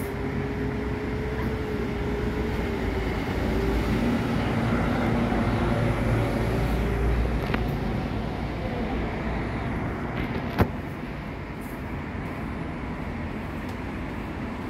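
Steady low rumble of background motor-vehicle noise, with a humming tone that drops in pitch about four seconds in, and one sharp click about ten and a half seconds in.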